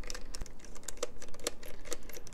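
Self-tapping tri-wing screw being backed out of a plastic meter housing with a precision screwdriver: a rapid run of small crunchy clicks as the threads release from the plastic. The screw is very tight in the plastic.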